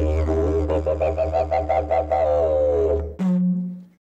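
Closing music played on a didgeridoo: a steady low drone with overtones that shift and pulse rhythmically above it. It stops a little past three seconds in, and a short higher note follows and fades out.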